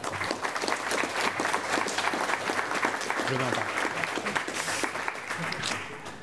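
Audience applauding: dense clapping that thins out toward the end.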